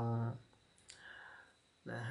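A single short click in a pause between spoken words, followed by a faint soft hiss; a man's speech resumes near the end.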